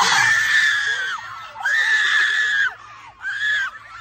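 Teenage girls screaming with excitement: three long, high screams, the first two about a second each and the third shorter, then quieter chatter near the end.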